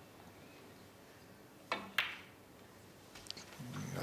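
A snooker shot in a quiet arena: the cue tip strikes the cue ball, and about a third of a second later the cue ball hits a red with a sharp click.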